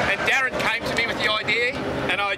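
Men talking and laughing.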